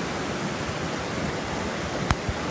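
Steady rushing of muddy floodwater running down a flooded street.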